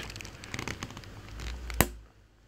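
Plastic crackling and rustling as hands handle the plastic locating sleeve on a radiator's transmission-cooler hose port, with one sharp plastic click near the end.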